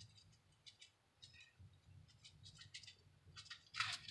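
Faint, scattered ticks and light rattles of a plastic seasoning shaker, which has grains of rice in it, being shaken over meat, with a louder click near the end.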